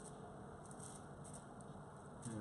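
Faint, soft rustling as fingers pat a panko-breadcrumb and olive-tapenade crust down onto fish fillets on a foil-lined tray, with a couple of brief light crinkles.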